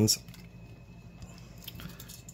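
Faint handling of a small plastic camera zoom-lens barrel, with a few soft clicks near the end over a low steady hum.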